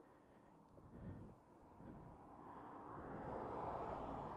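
Near silence, then a motorhome approaching on the road: its road and engine noise builds gradually over the second half.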